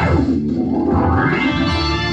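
Organ music run through a sweeping filter effect: the bright upper sound closes down to a dull low tone in about half a second, then opens back up over the next second.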